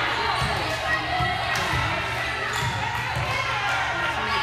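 A volleyball bouncing on a hardwood gym floor, several irregular thuds, under a constant murmur of player and spectator voices in a large, echoing gym.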